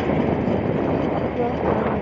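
Steady rush of wind on the microphone over a motorcycle running along at road speed.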